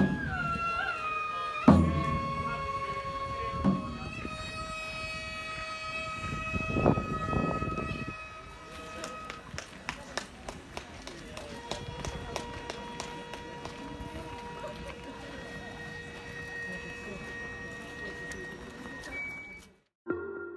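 Gagaku shrine music: long, wavering wind-instrument tones that bend in pitch, with a hanging drum (tsuri-daiko) struck three times in the first seven seconds, the loudest about two seconds in. After that the sustained tones go on more quietly with scattered light clicks, and the sound cuts off suddenly just before the end.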